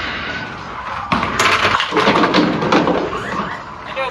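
A mini bowling ball rolling down the lane, then crashing into the pins about a second in: a clatter of hard impacts lasting about two seconds before dying away.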